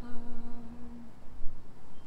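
A woman humming one long, steady note that stops about a second in.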